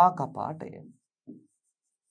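A man's voice for about the first second, then faint taps and scratches of a pen writing on an interactive touchscreen board.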